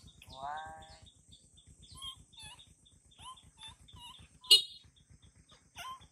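Animal calls: one longer call with a curving pitch shortly after the start, then scattered short high chirps, and a single sharp click about four and a half seconds in.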